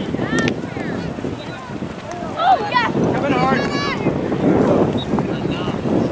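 Wind buffeting the microphone in a patchy rumble, with several short shouts from people on and around the soccer pitch, the loudest about two and a half seconds in.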